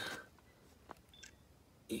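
Quiet outdoor background between words, with a single soft click about a second in and a couple of faint brief ticks after it.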